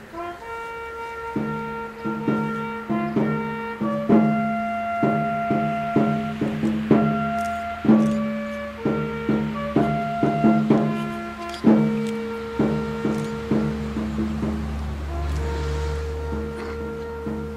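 A brass-led wind band playing a tune in held chords, with each new note or chord struck cleanly.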